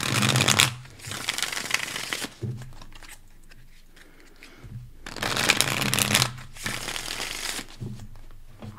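Deck of tarot cards being shuffled by hand, in four bursts of shuffling noise: two close together at the start, two more about five seconds in.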